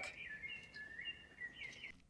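Faint bird song: a string of high, clear whistled notes that step up and down in pitch.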